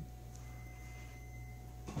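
Room tone: a steady low hum, with a faint thin high whine through the middle.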